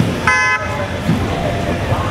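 A short vehicle horn toot, about a third of a second long, shortly after the start, over the chatter of a street crowd.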